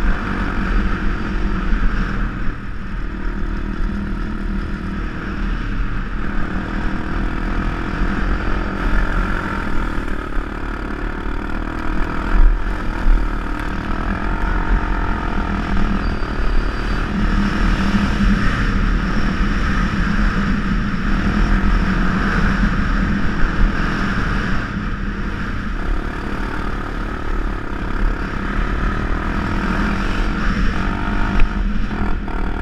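Honda ATV engine running at a fairly steady pace while riding over sand, with a low wind rumble on the microphone and a few short jolts from bumps.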